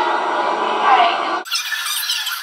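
A young woman's voice close to the camcorder microphone. About one and a half seconds in, it switches abruptly to a thin, high-pitched sound with no low end, which lasts about a second.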